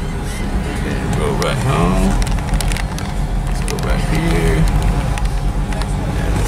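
Music with a voice in it, over a steady low rumble.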